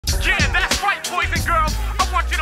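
Opening of a hip hop track: a man's voice over a beat with a deep bass line.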